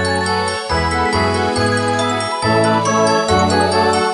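Bright, lively orchestral music with piano: a bass line stepping to a new note every half second to second under full chords, with short high notes sparkling on top.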